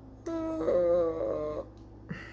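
A drawn-out, wavering vocal sound lasting about a second and a half, with two pitches overlapping for most of it.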